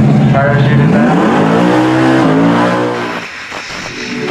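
Drag-racing street cars accelerating hard down the strip. The engine note climbs in pitch, drops sharply a little after two seconds as the car shifts gear, climbs again, then fades away after about three seconds.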